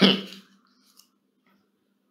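A man's voice trailing off on a short hissy syllable, then a pause with only a faint steady low hum and one small click about a second in.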